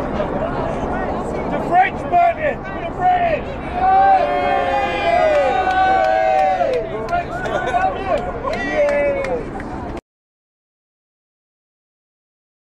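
A crowd of protesters shouting, whooping and jeering, with many voices over one another and no words standing out. The sound cuts off suddenly near the end.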